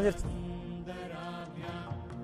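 Background devotional music: a chanted mantra, the voice holding a long steady note.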